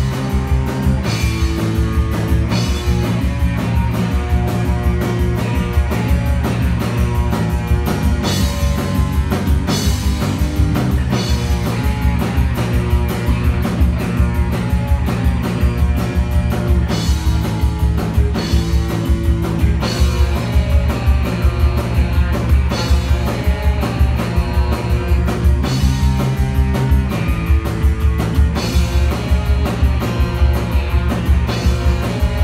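A live rock band playing a song with a steady driving beat: drum kit with cymbals, electric bass and electric guitar.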